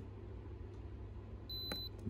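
Electronic battery capacity tester's buzzer giving one short, high-pitched beep near the end, as its button is held to zero out the recorded amp-hour reading.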